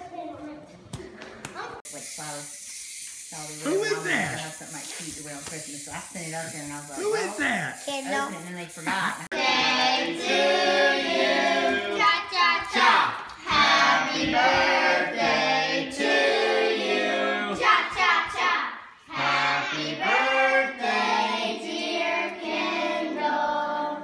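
A group of children's voices singing together, starting about nine seconds in. Before that come scattered voices over a steady hiss.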